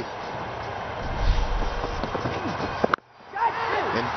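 Cricket broadcast ground ambience: a steady noise bed with faint distant voices and a low rumble, ended by a sharp click and a sudden drop about three seconds in, after which a man's commentary voice begins.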